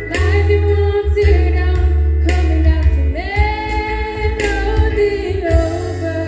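Women singing a gospel worship song into a microphone over live band backing, holding long sung notes above a steady bass and drum beat.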